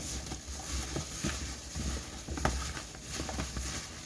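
Gloved hands mixing potato and carrot pieces with a wet spice paste in a plastic bowl: irregular soft squishing and rustling of disposable plastic gloves, over a steady low hum.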